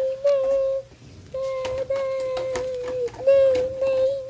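A high whining voice held on one steady, slightly wavering note, in three long stretches with short breaks, with faint clicks between.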